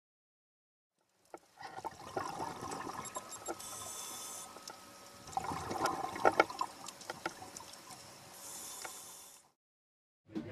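Scuba regulator breathing heard underwater: a bubbling, crackling exhalation followed by about a second of hissing inhalation, twice. It starts about a second and a half in and stops shortly before the end.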